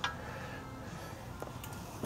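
Low, steady background noise with one short click at the start and a few faint ticks a little later: handling noise as a handheld camera is moved around under a truck.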